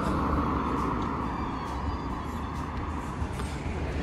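Road traffic: a passing car's tyre and engine noise, loudest at the start and fading away over the first two seconds or so, over a steady low traffic rumble.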